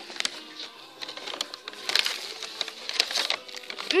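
Someone chewing a hard macaron close to the microphone: irregular small crunches and clicks.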